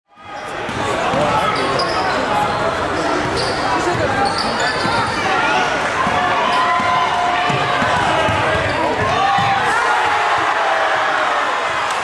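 Basketball game sound in a school gym: a ball dribbling on the hardwood floor over a crowd's overlapping chatter and shouts, fading in at the start.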